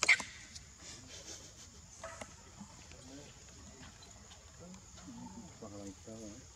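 Macaque calls: a sharp, loud squeak right at the start and a shorter one about two seconds in.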